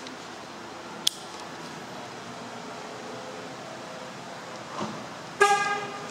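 A sharp click about a second in, then a single short toot of a Chevrolet Cruze's car horn near the end, the loudest sound here, over a steady background hum.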